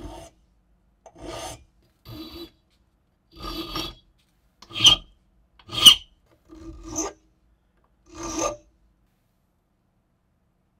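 Flat hand file rasping across the edge of a small metal part clamped in a bench vise: eight strokes about a second apart, the two in the middle the loudest.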